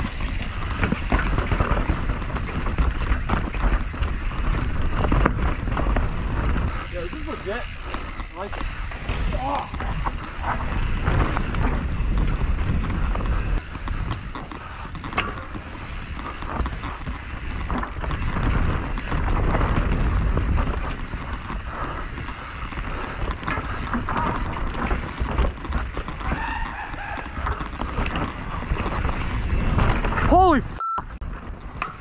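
Mountain bike descending fast on dry dirt singletrack, recorded on a helmet-mounted GoPro Hero 8: steady wind rush on the microphone over tyre noise and the rattle and knocks of the bike over roots and rocks.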